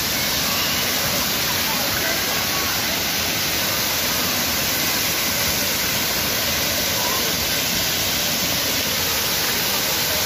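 Steady rush of water pouring and spraying down from a water-park play structure onto the splash floor, unbroken and even in level, with faint distant voices underneath.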